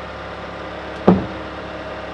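Bobcat skid-steer loader's engine running steadily while it holds a loaded pallet fork, with one sharp knock about a second in as the load bumps the wooden platform.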